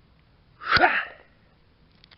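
A bare fist strikes and breaks a thin stone slab about three-quarters of a second in, giving a sharp impact. The strike comes inside a short, loud, breathy burst of voice of about half a second, falling in pitch.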